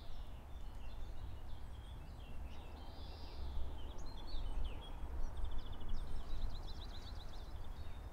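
Outdoor ambience: a low, steady background rumble with small birds chirping now and then. Past the middle comes a rapid trill of quick, evenly spaced high notes.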